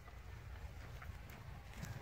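A saddled horse grazing close by: faint crisp tearing of grass, a few soft snaps over a low rumble.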